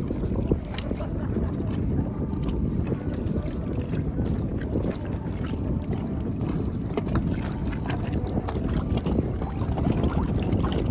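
Wind buffeting the microphone in a steady low rumble, with many small, irregular splashes and drips of water from paddling a kayak.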